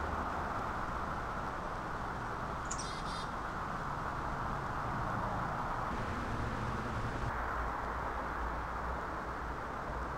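Steady outdoor background noise with a low rumble of distant traffic, and one short, quick bird chirp about three seconds in.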